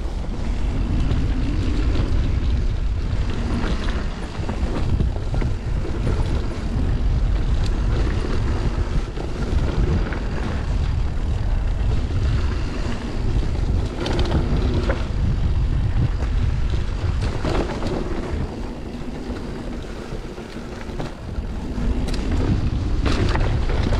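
A mountain bike descending a dirt trail: wind rushing over the microphone with a steady rumble of tyres, and a few sharp knocks of the bike over bumps.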